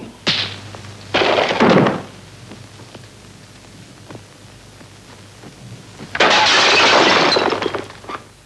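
Old film soundtrack of a brawl: a short crash, then a louder crash about a second in, as of furniture breaking. Near the end comes a dense burst of submachine-gun fire, nearly two seconds long.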